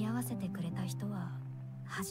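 Anime soundtrack playing: a short voiced breath or gasp at the start, then soft sustained background music with held notes.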